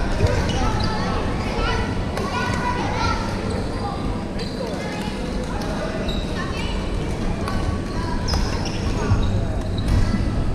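Busy indoor badminton hall: many overlapping voices of players across the courts, with scattered sharp knocks of rackets striking shuttlecocks and feet on the wooden floor, echoing in the large hall.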